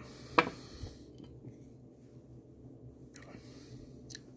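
Glass beer mug set down on a table: one sharp knock about half a second in, then only faint small sounds.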